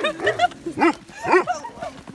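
A large shaggy black dog giving several short barks in quick succession.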